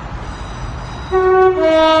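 Train horn sounding a two-tone warning about a second in, a higher note followed by a lower note, over a steady low rumble.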